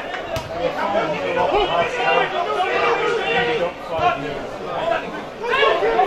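Overlapping voices of several people talking and calling out at once: spectators chattering beside the pitch.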